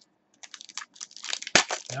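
Trading cards and a foil pack wrapper being handled: a quick run of short, sharp crinkles and flicks that starts about half a second in, with one louder snap just past the middle.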